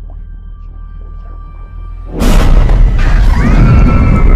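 Horror-trailer score: a low drone with faint held tones, then about two seconds in a sudden loud boom that runs on as a dense, noisy blast with high tones bending upward through it.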